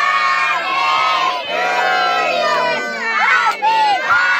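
A crowd of children shouting and cheering together, many high voices overlapping.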